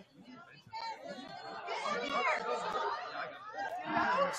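Many voices chattering and calling out over one another, as from spectators and players at a soccer match. The voices build and get louder from about a second in.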